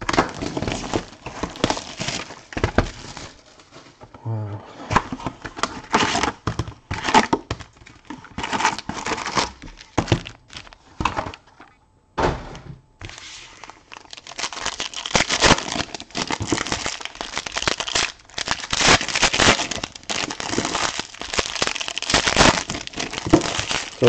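Foil trading-card packs and their packaging crinkling and rustling as they are handled, on and off, with a few knocks. There is a short lull about halfway through.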